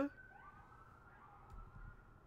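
A faint tone slowly gliding in pitch, like a distant siren wailing, over quiet room tone.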